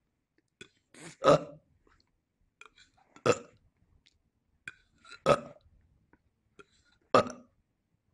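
A man's short, abrupt 'ah' vocal outbursts, four of them about two seconds apart.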